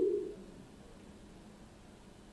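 A woman's voice trailing off on a held low vowel in the first half second, then quiet room tone.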